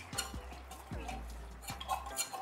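A metal spoon scraping and tapping against a tomato puree container: a few light, separate clicks. A low, steady hum runs underneath.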